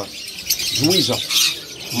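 Many small cage birds chirping in high, rapid, overlapping twitters, with a short spoken syllable about a second in.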